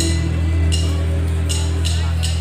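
Live rock band playing loud amplified music in a concert hall, heard through a phone microphone: a heavy, steady bass drone with a few drum or cymbal hits on top.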